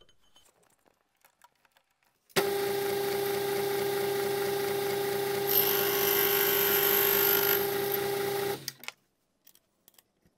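Lathe spindle spinning an abrasive grinding wheel, starting with a steady hum about two and a half seconds in. For about two seconds in the middle the wheel grinds a high-speed steel tool bit, adding a high, hissing rasp over the hum. The sound cuts off about a second and a half before the end.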